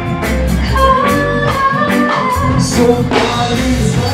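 Live reggae band playing a steady beat on drum kit, bass and guitar, with a male singer's amplified vocal over it.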